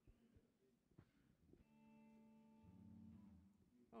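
Near silence, then a faint held instrumental chord starts about a second and a half in and is joined by lower notes about a second later.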